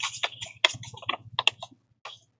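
Paper being handled and pressed down on a spiral-bound planner: a quick, irregular run of small clicks and crackles that stops shortly before the end.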